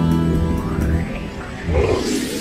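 Intro theme music: held chords that stop about a second in, then a sound effect that sweeps upward and ends in a short loud swell near the end.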